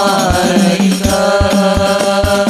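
A man singing a long, wavering sholawat line into a microphone, backed by rebana frame drums struck by hand in a steady beat.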